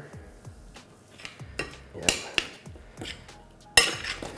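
Metal spoon stirring and scraping shredded turkey in a stainless steel skillet, with scattered light clinks, and one sharp metal clank near the end.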